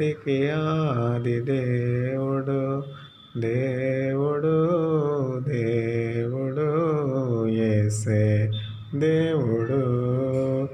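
A man singing a Telugu devotional hymn solo, in slow, long-held chanted phrases, with a short break about three seconds in.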